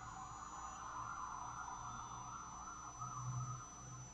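Faint steady background hiss with a low hum that swells briefly about three seconds in; no clear source stands out.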